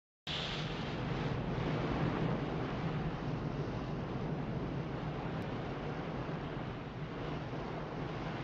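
Steady wind buffeting the microphone over a low rumble, as on an aircraft carrier's open flight deck at sea. It starts abruptly just after the opening.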